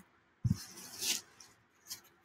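A soft bump about half a second in, then a short rubbing rustle as a foam pool noodle and a paper poster are handled.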